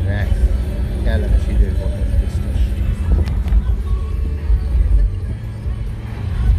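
Steady low rumble inside a moving car's cabin: engine and road noise while driving.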